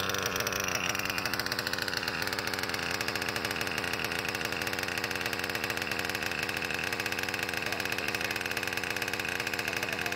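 A Kyosho KE25 two-stroke glow (nitro) engine in an RC monster truck idling steadily with a rapid, even buzz. It is warmed up to about 80 °C and running on homemade fuel of methanol, castor and two-stroke oil, and acetone.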